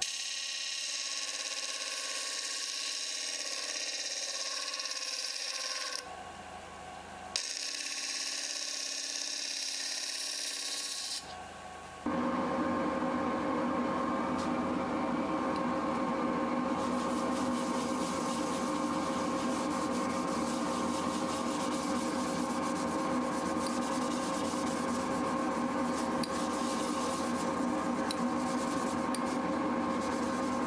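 Abrasive sanding against a segmented wooden bowl spinning on a wood lathe, a steady hiss cut into two stretches, then about twelve seconds in the lathe runs on with a steady, louder hum of several fixed tones while finish is rubbed on with a cloth.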